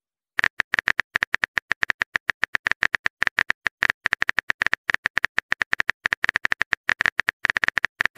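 Phone keyboard typing sound effect: a rapid run of short clicks, about ten a second, as a text message is typed out, with a brief pause midway.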